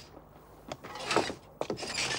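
Knocks, clunks and creaks of an old open touring car's body and a wooden ladder as someone clambers over them. There are a few separate knocks, with a rattling scrape near the end.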